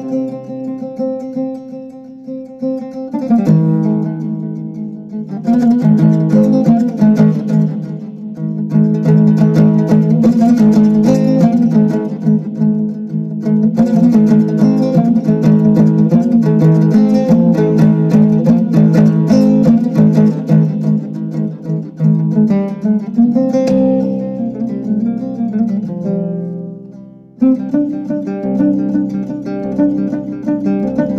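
Instrumental music played on plucked strings. After a sparser opening of a few seconds, quick runs of notes carry on almost without break, with a brief drop-off and re-entry near the end.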